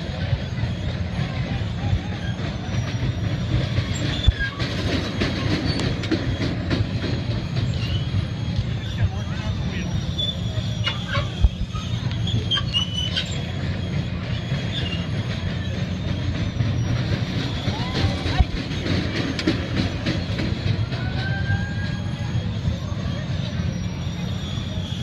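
Spinning kiddie carnival ride running, a steady low rumble from its drive machinery, with scattered clicks and brief high squeaks.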